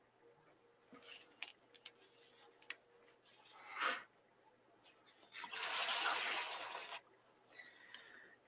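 Sketchbook paper being handled: a few light clicks and taps, a short rustle about four seconds in, then a longer paper rustle lasting about a second and a half as the sketchbook page is turned.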